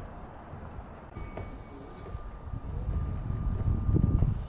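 Low vehicle rumble with a steady high whine, swelling over the last second or so.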